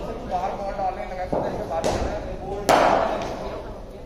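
Cricket ball and bat in an indoor net: a thud about a second in, then two sharp cracks, the last and loudest one echoing through the hall. Voices chatter in the background.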